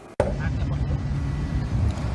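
Steady low outdoor rumble that cuts in abruptly about a fifth of a second in.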